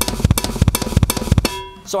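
A drum kit played in a fast linear chop, a rapid run of snare and bass drum strokes that stops about one and a half seconds in, the drums ringing briefly after.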